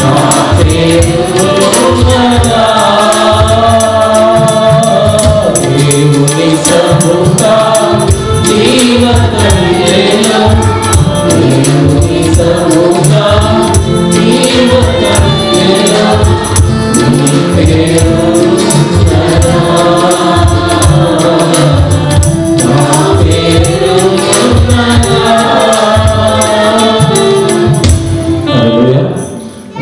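A mixed choir of men's and women's voices singing a Telugu Christian worship song through microphones. A tambourine and instrumental accompaniment keep a steady beat.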